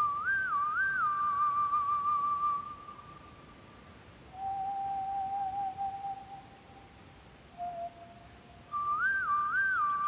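A lone whistled melody from the film's score: a high note that twice flicks briefly up a step and is then held with a slight waver, a lower held note, a short lower note, and the opening figure again near the end.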